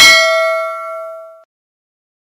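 Notification-bell ding sound effect: one bright chime struck just before, ringing out and fading away about a second and a half in.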